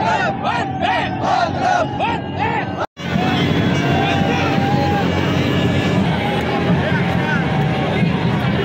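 A street crowd celebrating, shouting a rhythmic chant together. After a sudden cut about three seconds in, it gives way to a dense, steady din of cheering voices over a low hum.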